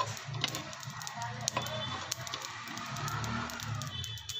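A spatula stirring and scraping whole spice seeds (cumin, coriander, fennel) as they dry-roast on a hot tawa: a dense rustle with many scattered ticks, over background music.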